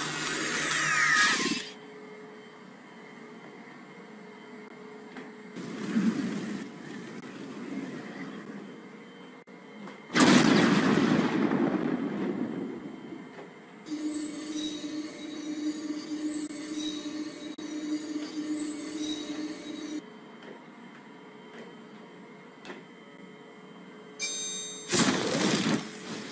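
Sound effects from 3D effects added in the Windows 10 Photos app, playing back over a home video's own sound. There are several loud, sudden bursts, at the start, about six seconds in, about ten seconds in (the loudest) and just before the end, with quieter stretches and a faint steady hum between them.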